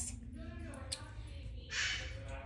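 A child's voice in a pause between sentences: a faint hesitant hum, then a short raspy, breathy vocal sound near the end.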